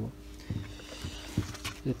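A few light knocks from a plastic blower housing being handled, over a faint steady hum.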